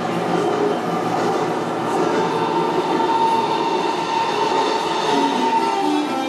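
Sound of a train running on rails, a steady dense rumble with a held squealing tone coming in about two seconds in, played as the show's opening sound before the music.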